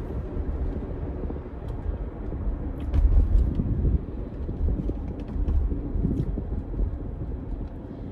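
Car cabin noise while driving: a steady low road and engine rumble that swells briefly about three seconds in.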